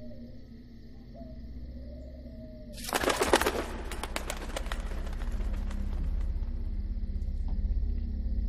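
Pigeons cooing softly, then about three seconds in a sudden loud flurry of wingbeats as a flock takes off, fading over the next second or two. A low steady music drone runs underneath.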